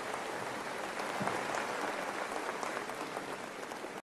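Concert audience applauding: a dense, steady patter of many hands clapping, easing off a little near the end.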